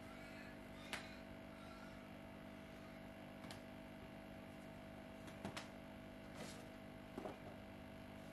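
Quiet room tone with a steady hum, broken by a few soft knocks and rustles from someone putting on socks and sneakers on a tiled floor, the last ones near the end.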